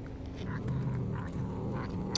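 A cat making a low, drawn-out rumble as it eats, starting about half a second in, with short repeated crunches of chewing on raw fish.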